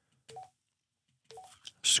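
Baofeng UV-5R handheld radio's keypad beeps: two short, quiet beeps about a second apart as its buttons are pressed to enter and move through the menu.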